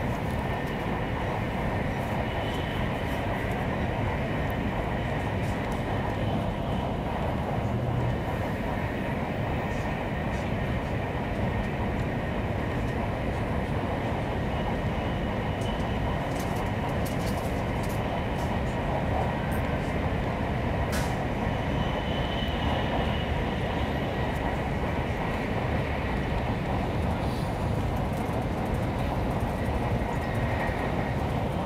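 Steady running noise of a Taiwan High Speed Rail 700T electric high-speed train heard from inside the passenger cabin while travelling at speed: an even, unbroken low rumble with a faint high whine above it.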